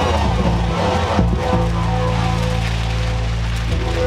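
Live dub sound system mix: a deep, steady bass line under a hissing wash of noise from the mix's effects.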